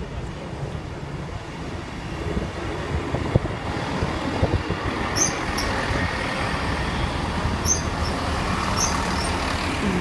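East Midlands Trains diesel multiple unit passing slowly at close range, its low rumble of engine and wheels growing louder about two seconds in. A few short high-pitched squeaks come in the second half.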